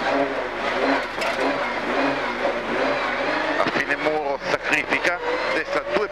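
Mitsubishi Lancer Evolution rally car's turbocharged four-cylinder engine accelerating hard out of a left hairpin, heard from inside the cabin, its revs rising over the first few seconds.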